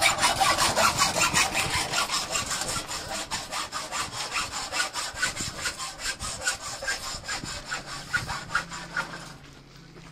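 Hand sawing with rapid, even back-and-forth strokes, fading away near the end.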